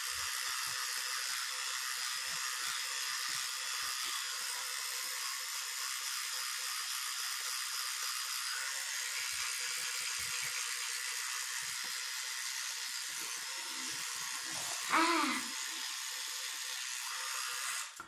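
Rotating electric toothbrush running steadily in the mouth, its motor buzz mixed with the hiss of bristles scrubbing the teeth. A short vocal sound breaks in about fifteen seconds in.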